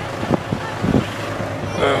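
A hayride wagon on the move gives a steady, noisy rumble, with riders talking in the background.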